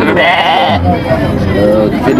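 A sheep bleating once, a short wavering bleat of under a second at the start.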